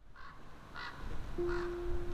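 A bird calling three times in short calls. Background music comes in on a held note near the end.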